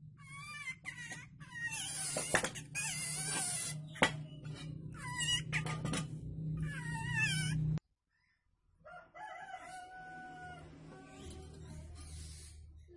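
Chickens calling: a string of wavering calls, with two sharp knocks about two and four seconds in. The sound cuts off abruptly a little before eight seconds in, and fainter sounds follow.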